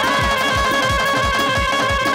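Instrumental passage of live Bengali Baul folk stage music: a reedy lead melody, with a pitch glide near the start, over a steady drum beat of about four strokes a second.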